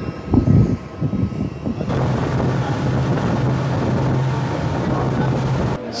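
Turboprop aircraft engine noise: a steady rush with a low hum, starting suddenly about two seconds in and cut off just before the end. Before it there are gusts of wind rumbling on the microphone.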